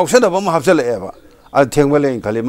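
Only speech: a man talking in a studio interview, with a short pause about halfway through.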